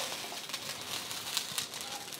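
Hot oil faintly sizzling and crackling in a wok, with a few stray rice vermicelli strands frying in it.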